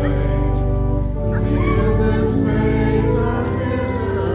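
A hymn sung by voices over sustained organ chords.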